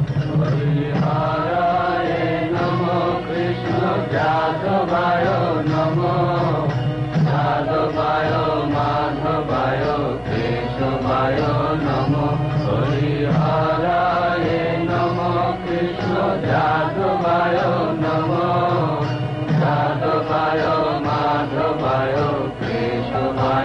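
Devotional chanting sung over musical accompaniment, the voices carrying a wavering, mantra-like melody.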